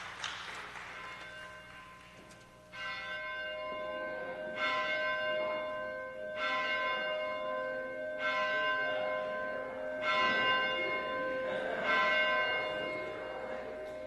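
A bell tolling slowly, one strike about every two seconds, beginning about three seconds in, each stroke ringing on into the next.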